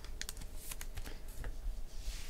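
Light clicks and taps in quick succession, about seven in the first second and a half, from hands at work on a desk.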